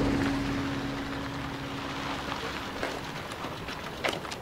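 A car engine running outdoors, under an even hiss of outdoor noise; a steady hum fades out about three seconds in.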